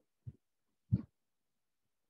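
Two brief low thumps about two-thirds of a second apart, the second louder, with dead silence between them.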